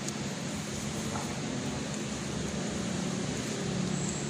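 Steady background hum and hiss of room noise, with no distinct event.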